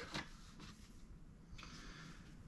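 Quiet room tone with faint handling noise as an intake manifold gasket is picked up off the bench: a light click about a fifth of a second in, then soft rustling near the end.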